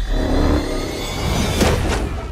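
Action-film sound effects: a heavy hit at the start, then a deep rumble, then a rising whoosh that ends in another impact about one and a half seconds in, as a superhuman fight breaks out.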